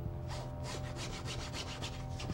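Paintbrush scrubbing against a painted surface in quick back-and-forth strokes, about five or six a second, over a steady low hum.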